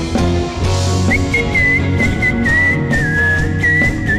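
Live rock band playing an instrumental passage with no vocals: drums, bass and guitars under a single high lead melody that slides and bends in pitch.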